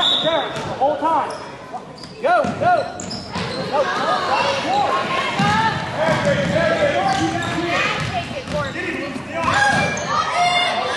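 A basketball being dribbled on a hardwood gym floor, with sneakers squeaking many times as players run and cut, in an echoing gym.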